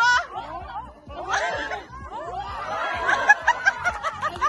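People laughing, the laughter turning into quick, rapid bursts in the second half.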